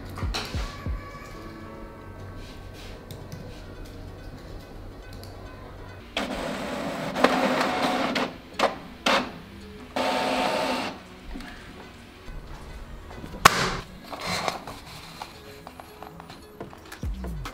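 Background music, with a desktop printer running in two loud bursts around the middle as it feeds out a printed page.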